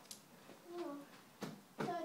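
A child's voice sounds briefly near the middle, then two sharp knocks come close together in the second half.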